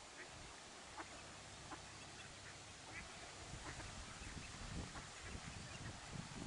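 Mallard hen and ducklings calling faintly while feeding: short, scattered calls every second or so over a steady background hiss.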